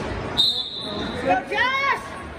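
Two high squeaks of athletic shoes gripping the gym floor or wrestling mat. The first is short and held at one pitch about half a second in; the second rises and falls near the end.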